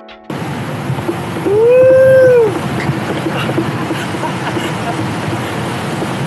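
Steady wind and rolling noise of a Miles Phantom electric skateboard cruising on a concrete path, with a few small ticks. The loudest sound is one long vocal call that rises and then falls in pitch, from about a second and a half in, lasting about a second.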